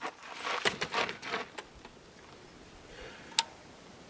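An AR-15-pattern rifle (FN15 in 300 Blackout) being handled: a quick run of metallic clicks and rattles from its action and magazine in the first second and a half, then one sharp click about three and a half seconds in.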